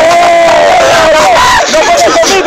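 A crowd of spectators yelling: a long drawn-out shout held for about a second, with other voices joining in, then breaking into shorter whoops.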